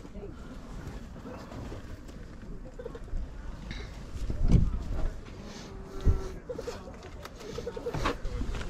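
Outdoor background of distant voices over a low rumble, with two dull thumps about halfway through.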